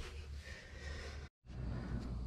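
Faint background room tone with a steady low hum, broken by a moment of dead silence a little past a second in.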